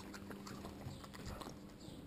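Faint small clicks and smacks from a cockapoo moving over a hard floor and licking at ice lolly scraps, over a faint steady hum.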